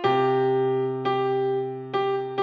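Electronic keyboard on a piano sound playing slow sustained chords over a low bass note, a new chord struck about every second and held until the next.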